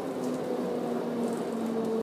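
Subway car interior while the train runs: a steady electric motor hum with two pitches that slowly fall slightly, over a rumbling noise.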